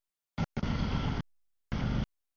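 CSX double-stack intermodal freight train rolling through a grade crossing: low rumble and wheel noise. The sound breaks up into short bursts with dead silence between them, as if it keeps cutting out.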